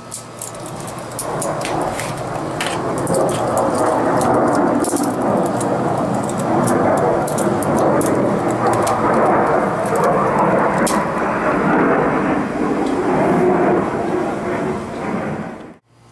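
A steady rushing noise with scattered light clicks of hard plastic toy balls being pushed into a plastic launcher. It cuts off suddenly near the end.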